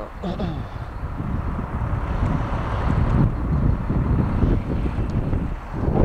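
Wind buffeting the microphone over a steady low rumble, with no clear pitched engine note.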